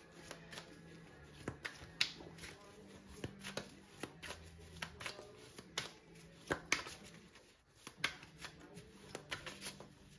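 A deck of tarot cards being shuffled by hand: a run of irregular flicking clicks as the cards slap together, with a brief lull about seven and a half seconds in.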